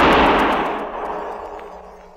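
Echoing gunshot sound effect: the reverberating tail of a single shot dies away over about two seconds.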